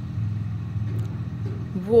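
A steady low mechanical hum in a pause between words, with a faint click about a second in.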